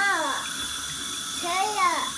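Bathtub tap running a steady stream of water into the tub, with a toddler's voice twice: a short high call that rises and falls in pitch at the start and another near the end.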